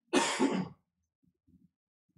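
A man clearing his throat once: a single short, rasping burst in the first second, followed by a few faint small sounds.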